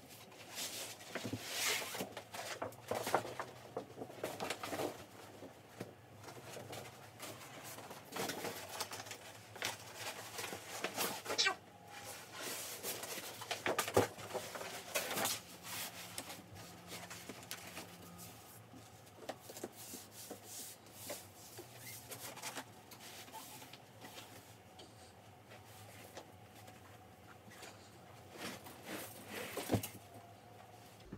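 Plastic and fabric rustling with soft knocks and thuds as a mattress and bedding are handled: a vinyl bath mat and shower curtain are laid on the bed base, the mattress is lowered onto them and the duvet is pulled straight. The noises come irregularly and are busiest in the first half.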